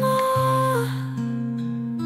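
Slow pop ballad music between sung lines: a single held note that stops under a second in, over sustained low chords that change about halfway through.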